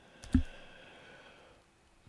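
A single sharp click with a low thump about a third of a second in, as the lecture slide is advanced. It is followed by a faint high tone that fades out over about a second.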